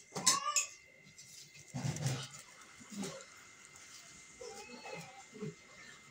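A domestic cat meowing several times. The loudest, longest call comes right at the start, and shorter, fainter mews follow later.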